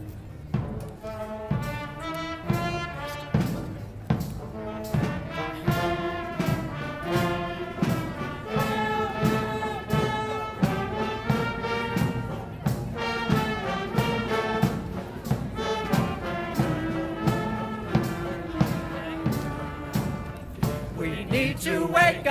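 Brass marching band playing a tune over a steady drum beat of about two strokes a second. Voices begin singing near the end.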